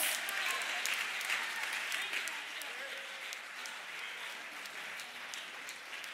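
Church congregation applauding in response to the sermon, with a few voices mixed in; the clapping is loudest at first and dies away over the few seconds.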